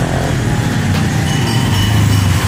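Road traffic noise: a steady low hum of passing motor vehicles.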